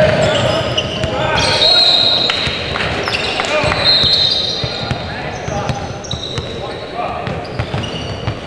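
Basketball game in a gym: the ball bouncing on the hardwood court, players' voices calling out, and a couple of short high squeaks, all echoing in the large hall.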